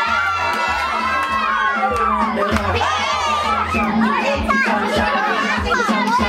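A group of children shouting and cheering together, many high voices overlapping, over dance music with a thumping bass beat.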